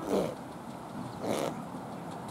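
A trotting piebald cob snorting, blowing air out through its nostrils twice, about a second apart, each a short falling, fluttery rush.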